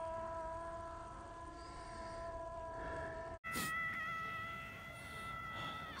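A faint, steady pitched tone held for about three seconds, cut off abruptly, then a second, higher held tone.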